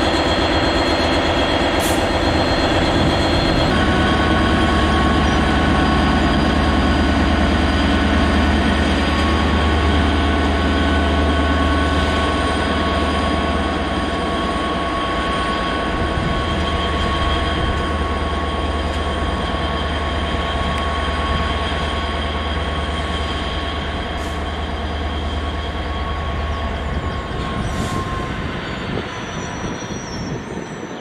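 GBRf Class 66 diesel locomotive's two-stroke EMD engine running with a deep drone as it leads a train of open box wagons round a curve. Steady high-pitched wheel squeal rings over it. The engine drone drops away near the end, and the train grows slowly quieter.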